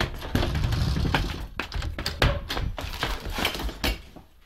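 Comedy-record sound effect of someone rummaging hurriedly through a refrigerator: a busy, irregular clatter of knocks, taps and bumps that dies down near the end.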